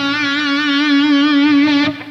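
Electric guitar holding a single note, C sharp at the sixth fret of the G string, sustained with finger vibrato for nearly two seconds and cut off just before the end.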